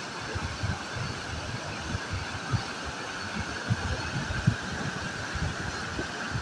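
Muddy floodwater rushing down a flash-flooded riverbed: a steady rushing noise, with irregular low thumps underneath.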